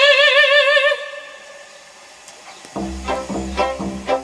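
Operatic soprano holding a high sung note with wide vibrato, which ends about a second in. After a short, quieter pause, the orchestra comes back in near the end with low strings and quick, detached notes.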